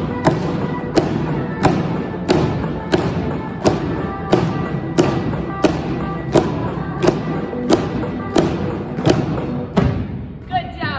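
Pop song with a steady beat, with drumsticks thumping on exercise balls in time with it, about three strikes every two seconds.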